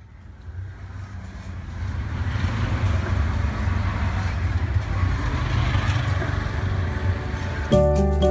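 Auto-rickshaw engine running with a steady low drone and street traffic noise, heard from inside the cab, fading in over the first couple of seconds. Music with clear sustained notes comes in just before the end.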